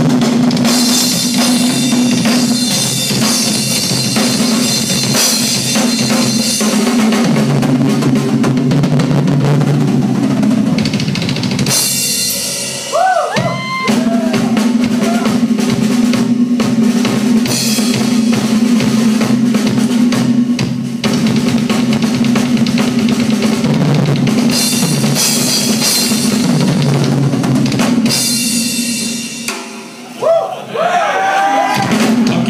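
Live rock drum kit solo: rapid bass drum, snare and cymbal strokes over a steady low tone. The drumming breaks off briefly about halfway through, then resumes and stops near the end.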